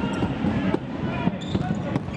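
Futsal ball being kicked and bouncing on a wooden indoor court, a few thuds under three-quarters of a second apart, with short high squeaks of shoes on the floor.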